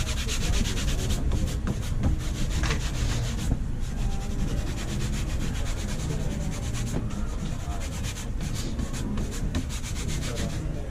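Shine cloth buffing the toe of a white sneaker: the rag is pulled rapidly back and forth across the shoe in quick rubbing strokes, with a brief easing about three and a half seconds in.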